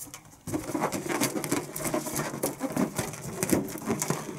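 Small inflated latex balloons being handled and tied together, giving an irregular run of rubbing and clicking sounds that starts about half a second in.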